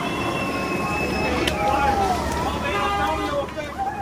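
Skateboard wheels rolling on city asphalt, a steady rumble, with people's voices and calls over it.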